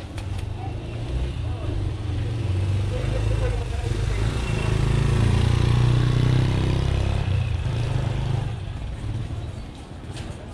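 Motorcycle engine of a motorized tricycle (motorcycle with a sidecar) passing close by, growing louder to a peak a little past halfway and fading over the last couple of seconds.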